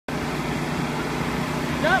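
A steady low mechanical hum, like a motor running, with a voice calling "Up" near the end.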